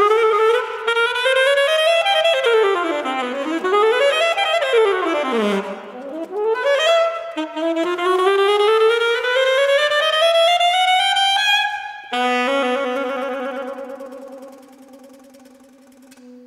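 Solo saxophone playing rapid runs that sweep up and down in pitch, then a long rising line, then a held low note that wavers and fades away near the end.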